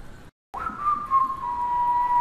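After a brief cut in the audio, a man whistles one long note that slides down a little at the start and then holds steady.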